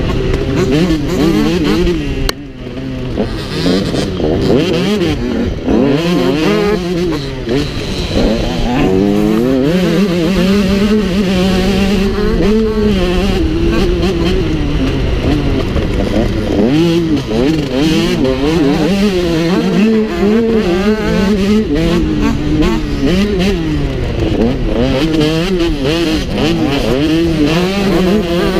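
Motocross bike engine heard close up from the rider's own machine, revving up and down as it is ridden hard along a dirt track. The throttle drops off briefly about two seconds in, then the engine pulls back up.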